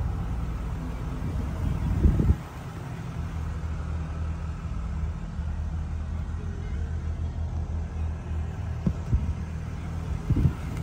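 Mitsubishi Outlander's 2.5-litre four-cylinder petrol engine idling steadily in Park, heard from inside the cabin. A few bumps about two seconds in, and light knocks near the end.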